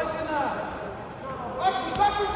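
Men shouting, with drawn-out calls that rise and fall in pitch.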